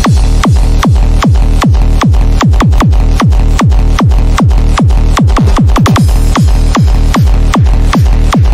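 Hard psytrance dance track: a fast, driving kick drum, each hit dropping in pitch, over a rolling bass line, with no vocals.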